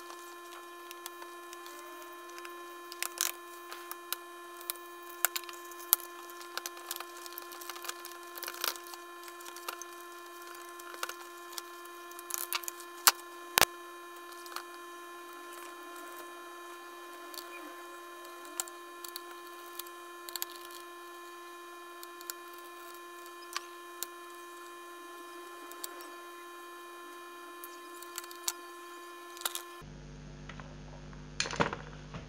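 Irregular clicks, snaps and knocks of plastic and metal laptop parts being handled as an HP laptop is taken apart: case panels unclipped and the motherboard lifted out of the chassis. The sharpest snap comes at about the middle.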